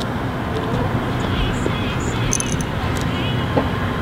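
Steady low rumble of distant road traffic with a faint hum, and a few faint high chirps and ticks near the middle.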